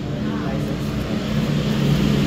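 A low, steady engine drone that grows louder toward the end.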